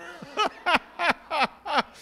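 Laughter: a run of about five short laughs, each falling in pitch, about three a second, over softer background laughing.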